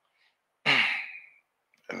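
A man's sigh into a close microphone: one breathy exhale of under a second, starting about half a second in and trailing off.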